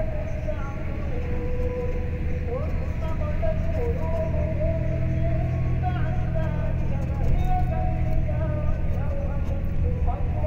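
Steady low rumble of a moving road vehicle, heard from inside, with music over it: a melody of held notes that step and slide in pitch.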